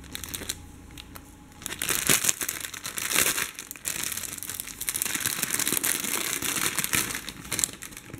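Clear plastic bag crinkling and rustling as skeins of embroidery floss are pulled out of it, starting about two seconds in.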